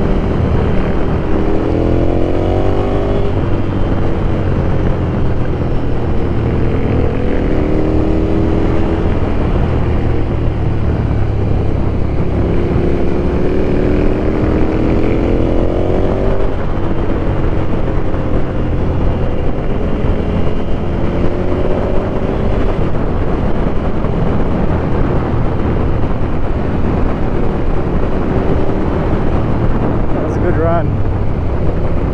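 Ducati Scrambler's L-twin engine heard from the rider's seat under way, rising in pitch through the revs about four times as the bike accelerates and dropping back between, over a steady low rumble.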